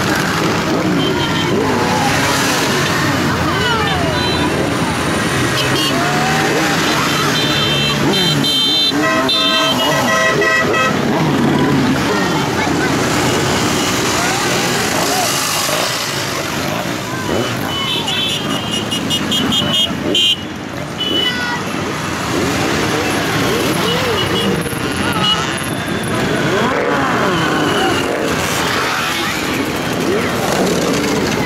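A procession of motorcycles riding past one after another, their engines rising and falling in pitch as each goes by. Horns toot twice, a long blast about eight seconds in and another a little past the middle.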